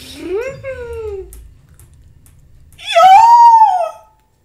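A woman's wordless vocal reactions: a short rising-and-falling "ooh" in the first second, then, after a quiet gap, a loud, high, drawn-out squeal near the end.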